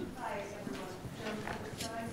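A faint, distant voice speaking off the microphone, with a few light clicks and knocks scattered through it.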